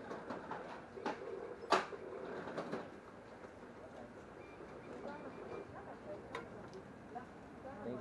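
Faint, indistinct talk with a few sharp clicks and knocks in the first two seconds, the loudest about two seconds in.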